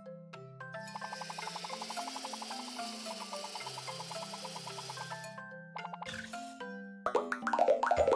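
Cartoon background music with a stepping bass line. From about a second in until about five seconds, a hissing machine sound effect with rapid clicking. From about seven seconds, a run of quick falling-pitch plop sound effects as the machine pops out red balls.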